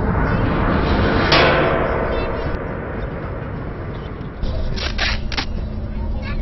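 Skateboard wheels rolling on asphalt, a steady low rumble with wind noise. A sudden loud rush of noise comes a little over a second in, and a few sharp clicks and knocks come about five seconds in.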